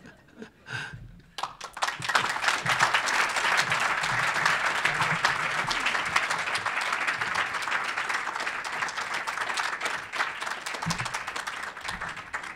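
Audience applause from a room of seated listeners, building quickly about a second in and then holding steady with a slight easing near the end.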